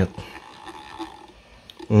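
A pause in a man's speech, leaving low room noise. His voice trails off at the start and comes back just before the end.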